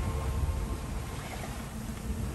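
Wind buffeting the microphone and water rushing along the hull of a yacht under sail, a steady low rumble with a noisy wash above it. Background music trails off at the start.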